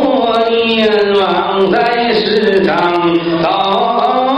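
A man imitating Buddhist monks' sutra chanting: one voice chanting in long, drawn-out notes that slide slowly up and down.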